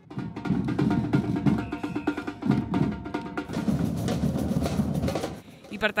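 Street percussion group drumming, many drums beating together, dying away shortly before the end.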